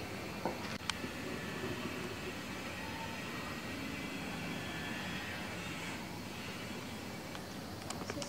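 Portable butane gas stove burner hissing steadily, with a couple of light clicks about half a second and a second in.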